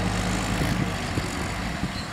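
Deutz-Fahr tractor's diesel engine running steadily under load as it pulls a heavily loaded root-crop cart.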